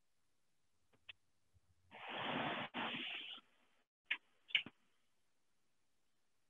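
Faint handling sounds from hands working the valves of a refrigeration trainer panel: a light click, then a rustling scrape lasting about a second and a half, then two more light clicks.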